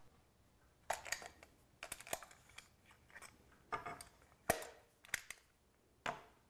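Small walnut box with a brass latch and a whittling knife being handled on a wooden workbench: a scattered series of sharp clicks and light knocks, the loudest about four and a half seconds in.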